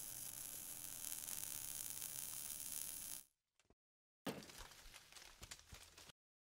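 Logo-animation sound effect: a steady hissing buzz for about three seconds that cuts off suddenly, then after a second of silence a run of irregular crackles and clicks.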